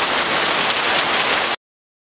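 Rain falling, a steady even hiss, which cuts off abruptly about one and a half seconds in.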